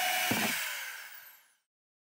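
Corded electric drill with a hole saw in a plastic drum, its motor running down with a falling pitch and fading out over about a second and a half; then silence.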